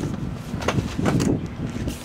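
A large, heavy cardboard box is turned over by hand: cardboard scraping and rustling, with a couple of knocks about halfway through. Wind on the microphone underneath.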